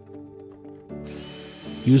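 Cordless drill/driver driving a screw, a steady motor whine with a hiss that comes in about a second in, over soft background music.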